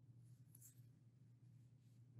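Near silence: room tone with a steady low hum and a couple of faint, short scratches of a stylus writing on a tablet screen in the first second.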